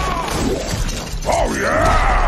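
Broken glass and debris shattering and scattering on pavement, as a film sound effect. Pitched sounds glide downward at the start and dip and rise again in the second half.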